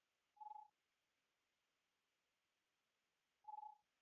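Two short electronic beeps, each a single steady pitch, about three seconds apart, over near silence.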